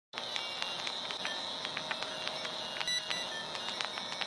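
Old-film crackle sound effect: a steady hiss with a thin high whine and irregular crackles and pops, as of a worn film reel running.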